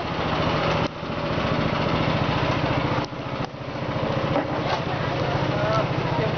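A small engine running steadily at an even pitch, with short dips in level about one second and three seconds in.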